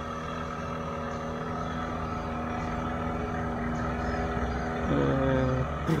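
Small passenger river ferry's motor running, a steady, even, low hum that holds without change.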